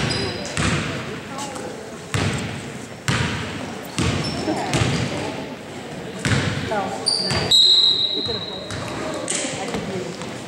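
A basketball bouncing on a hardwood gym floor, about once a second, with short high sneaker squeaks and voices in an echoing gym.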